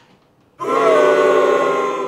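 An edited-in dramatic sound-effect sting: one loud, held chord of several notes. It starts suddenly about half a second in and cuts off abruptly at the end.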